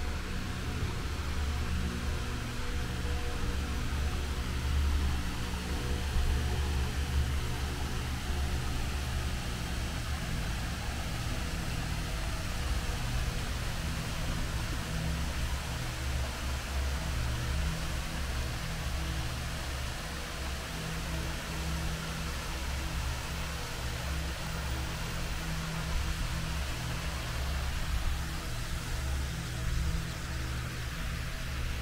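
Steady rushing of water over a small river's low stepped weir, a continuous even noise with a strong low rumble.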